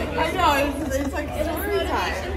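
Women chatting and talking over one another, with a steady low hum underneath.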